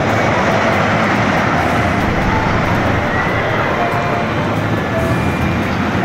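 Wooden roller coaster train running along its wooden track, a steady loud rumble and rattle with a few brief faint squeals over it.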